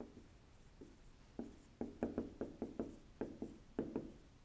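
Blue dry-erase marker writing on a whiteboard: a faint run of about a dozen short strokes and taps, starting about a second and a half in.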